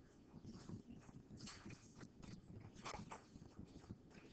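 Near silence: faint room tone with a few soft, scattered clicks and rustles.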